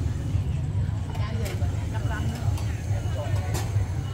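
Outdoor street ambience: a steady low rumble with faint distant voices and a few light clicks.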